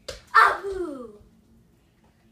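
A short wordless cry, loud at its onset and sliding down in pitch as it fades over about a second.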